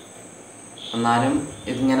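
A steady, high-pitched chirring runs in the background through a short pause in a man's talk. His speech starts again about halfway through.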